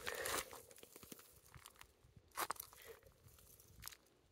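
A few footsteps crunching on dry, gravelly dirt, spaced out with quiet between them.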